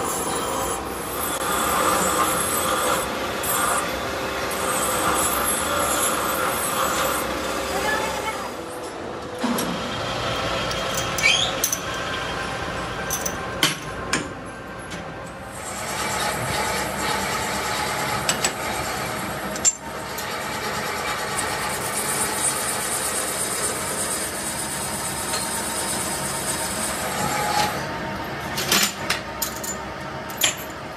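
Continuous scraping and rasping workshop noise with a few sharp knocks scattered through it, changing abruptly a few times.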